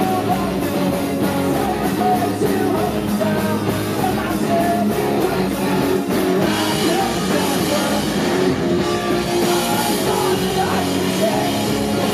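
Pop punk band playing live at full volume: electric guitars, bass and drum kit driving a steady beat, with a sung lead vocal over the top.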